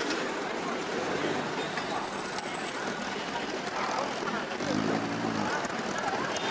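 City street traffic noise with people talking nearby. About five seconds in, a low droning note from a vehicle briefly swells.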